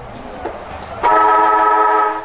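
Football ground siren giving one steady blast of a little over a second, starting about a second in. It signals the break between quarters.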